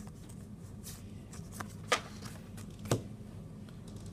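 A stack of Magic: The Gathering trading cards being handled and flipped through by hand, cards sliding against each other, with two sharp card snaps about a second apart near the middle.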